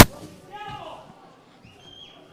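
A football struck hard once, a single sharp kick at the start, followed by faint shouts of players on the pitch.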